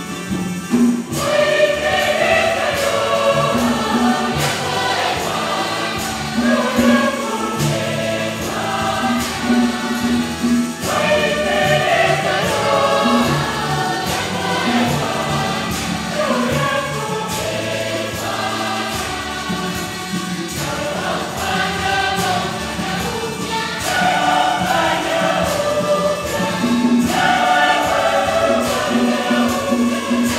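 Church choir singing with instrumental accompaniment: sustained bass notes under the voices and a steady, regular beat.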